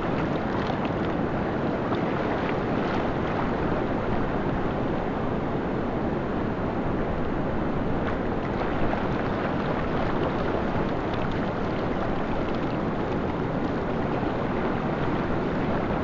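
Steady rushing noise of wind and surf on an open beach, with wind buffeting the microphone.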